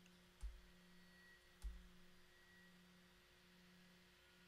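Near silence with a faint steady low hum, broken by two soft computer mouse clicks about a second apart, clicking through photos.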